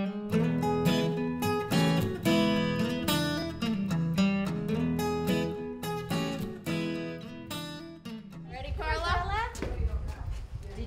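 Background acoustic guitar music, plucked notes in a steady pattern, stopping about eight and a half seconds in. Voices and outdoor background noise follow near the end.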